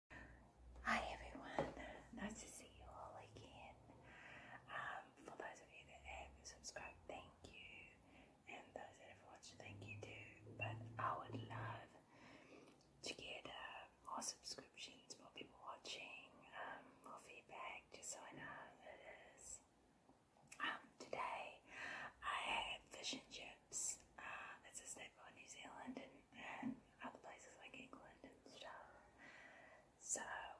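A woman whispering close to a microphone, in short phrases with pauses and a few small clicks in between.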